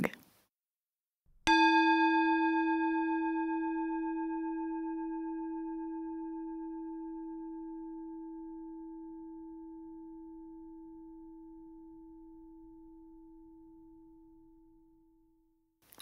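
Meditation gong struck once, about a second and a half in, ringing with a clear low tone and higher overtones. The higher overtones die away first, and the ring fades slowly over about thirteen seconds. It is the closing gong that ends the meditation session.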